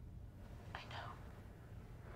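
Speech only: a brief, faint whispered "I know" about a second in, over quiet room tone.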